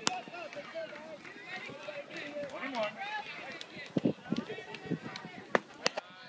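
Chatter and calls of spectators and young players, several voices overlapping without clear words. A few sharp clicks cut through: one at the start and two close together near the end.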